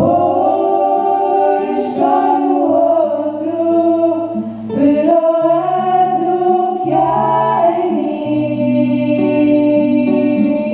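Live song: a small group of young singers singing together in harmony through microphones, with acoustic guitar accompaniment.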